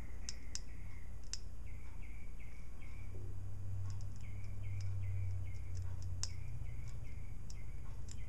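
A test lead tapped onto the terminal of a 1992 Nissan Pathfinder automatic transmission shift solenoid gives only a few faint sharp ticks from the current arcing. The solenoid itself does not click open and shut, which the owner takes for a failed solenoid. Repeated short chirps and a steady low hum run underneath.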